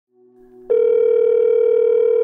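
Telephone ringback tone heard down the line as an outgoing call rings: a single steady ring tone starts about two-thirds of a second in and holds, after faint low tones. The call rings out to voicemail.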